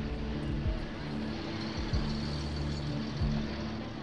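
Street traffic with car engines running, laid under a low, steady music score.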